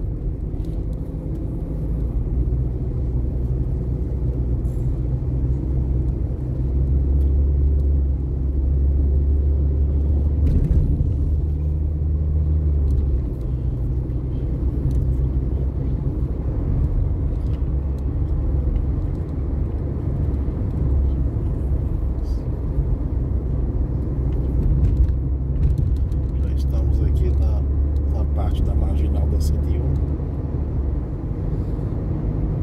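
Car engine and road noise heard from inside the cabin while driving: a steady low drone that swells for several seconds about seven seconds in and again near the end.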